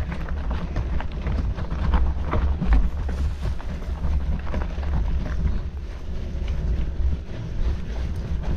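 Mountain bike rolling over loose gravel and dirt: tyres crunching on stones, with frequent short clicks and rattles from the bike, and wind rumbling on the microphone.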